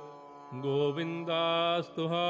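A single voice singing Sikh gurbani in a melodic recitation style. After a short pause, it sings long, drawn-out notes with slight bends in pitch.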